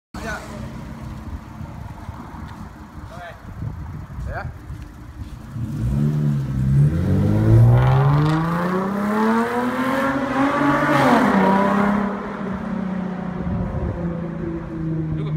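Lexus GS350's 3.5-litre V6 breathing through an aftermarket RES mid pipe and valved muffler: idling steadily, then pulling away with the exhaust note climbing in pitch for several seconds. Near the end the pitch drops back and holds a steady tone as the car drives off.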